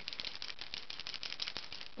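Elmer's Painter's white paint marker shaken by hand, its mixing ball rattling inside in quick, even clicks as the paint is mixed before use.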